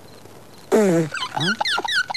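A man's loud, rough vocal outburst that breaks in suddenly about two thirds of a second in, followed by quick wordless voice sounds.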